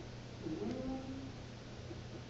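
A brief pitched vocal sound: a single short note that dips and then holds level for well under a second.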